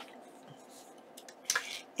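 Quiet room with a few faint clicks and rustles as a sheet of paper and a pair of large scissors are handled, and one short, louder sound about one and a half seconds in.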